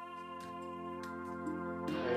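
Background music of sustained, held chords, moving to a new chord near the end.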